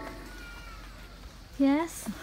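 A single short, high-pitched voiced call near the end, about a third of a second long and rising in pitch. Before it there is only a faint thin tone.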